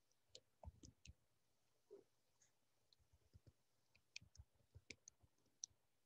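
Faint computer keyboard typing: irregular key clicks that come thickest about four to five seconds in.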